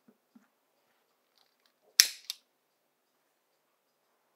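A sharp snap with a short hiss, then a smaller second snap right after: the spirit lamp being lit to melt enamel powder. Before it, two faint metal clicks from the lamp's cap being handled.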